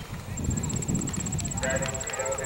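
Hoofbeats of a horse cantering on sand arena footing, then a person's voice starting near the end.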